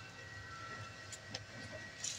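Faint steady background tone: a thin high whine over a low hum, with two faint clicks a little after a second in.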